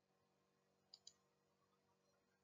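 Near silence, with two faint, quick clicks close together about a second in.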